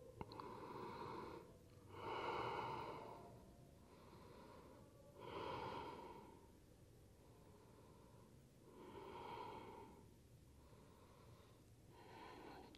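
A man breathing slowly and deeply, a series of soft, audible breaths each a second or more long, some stronger than others.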